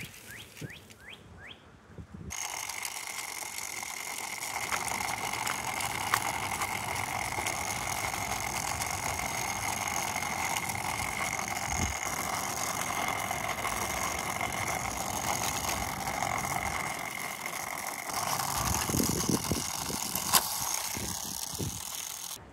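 Battery-powered motorized Hot Wheels track booster running, a steady whir with a constant high whine that switches on about two seconds in. A few clicks and rattles come near the end.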